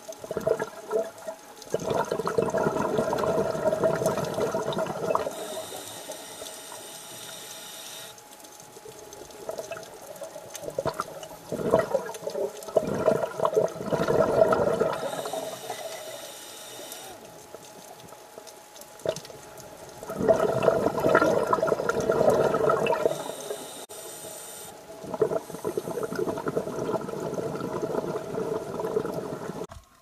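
Scuba diver breathing through a regulator underwater. A hissing breath in alternates with a longer rush of exhaled bubbles, in a slow cycle that repeats about every eight seconds.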